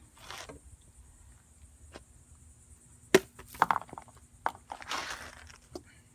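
Handling noise: a sharp click about three seconds in, a few quick knocks right after it, and a brief rustle about five seconds in.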